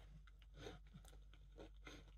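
Faint crunching and chewing of a yogurt-coated dried banana piece, a little crunchy rather than chewy, in short irregular crackles.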